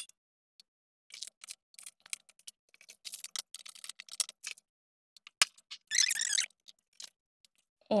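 Clamshell heat press being worked: a sharp clunk at the start as the handle is pulled down to clamp it shut, faint scattered clicks, and a short rasping noise about six seconds in as it is released and opened.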